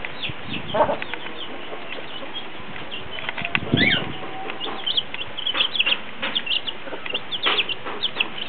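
Chicks peeping in many short, high chirps, some falling in pitch, with a few lower clucks from the mother hen.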